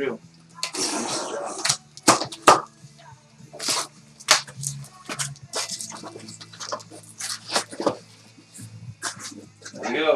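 Cardboard case being torn open by hand: quick rips and scrapes of the cardboard flaps, with knocks and slides as the boxes inside are pulled out and set on the table.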